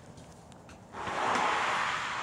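A steady rushing noise with no pitch starts suddenly about a second in and holds steady at a fairly loud level.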